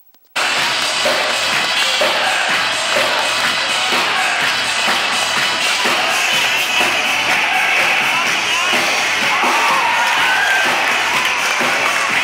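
Live rock band music with crowd noise at a concert, loud and steady, cutting in suddenly about half a second in after a moment of silence.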